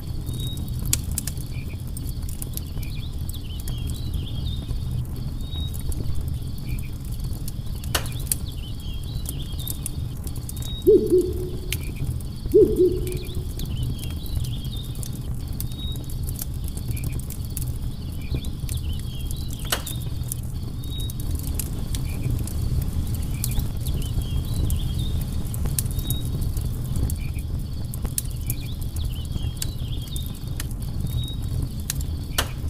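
Campfire crackling over a steady low rush of flame, with two sharper pops about 8 and 20 seconds in. Insects chirp high and repeatedly throughout, and two short low hooting bird notes sound about a second and a half apart near the middle.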